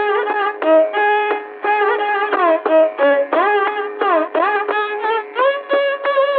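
Carnatic classical concert music from an old radio recording: a fast melodic line full of quick sliding ornaments and rapid note changes. The sound is thin, with no bass and no high treble.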